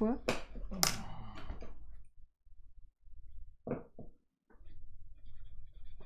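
A woman's voice for about the first two seconds and briefly again in the middle, then the faint, scattered scratching of a graphite pencil sketching on sketchbook paper.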